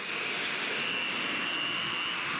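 Dyson Small Ball upright vacuum cleaner running as it is pushed across a rug, picking up pine needles: a steady rush of air with a faint high whine.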